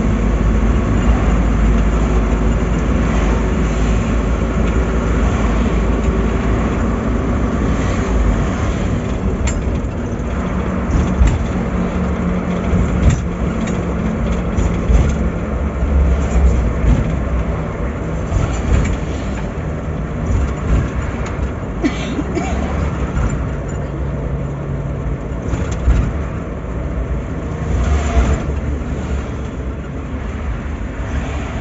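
A road vehicle's engine running and its road noise heard from inside the cabin while driving in city traffic: a steady low rumble whose engine note shifts in pitch as the speed changes, with occasional rattles and clicks.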